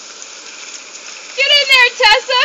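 Steady hiss of a garden hose spraying water. About one and a half seconds in, a woman breaks into high-pitched laughter that is much louder than the hose.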